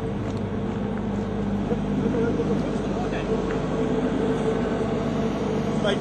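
Large diesel bus engine running steadily close by, a constant low drone.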